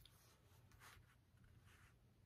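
Near silence, with faint soft rubbing of tarot cards handled on a table, the clearest just before a second in.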